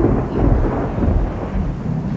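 Floodwater rushing past: a loud, even rushing noise with a heavy low rumble.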